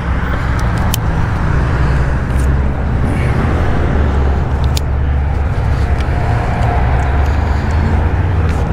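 Steady low drone of motor-vehicle engine and road noise, even in level throughout, with a few light clicks.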